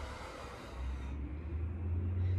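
A person breathing out hard through the mouth during a kettlebell single-leg deadlift, a breathy exhale lasting about a second. A steady low rumble starts under it and runs on.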